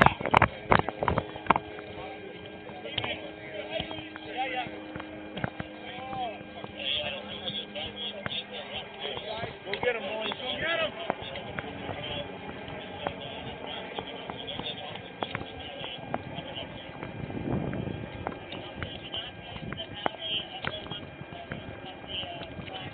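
Rapid footsteps and gear knocking against a body-worn camera for the first second or two, then walking footsteps with indistinct distant voices over a steady hum.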